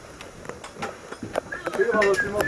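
A few irregular knocks and footfalls as people climb aboard a small plane through its side door and onto the cabin floor, with voices starting near the end.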